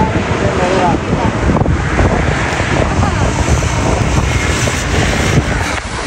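Wind buffeting the microphone: a loud, ragged rumbling rush throughout, with a few words of a voice in the first second.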